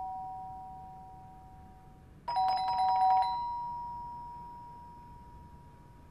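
Two-tone doorbell chime, a higher note then a lower one, rung about two seconds in, its notes fading slowly over the next few seconds. The tail of an earlier ring is fading out at the start.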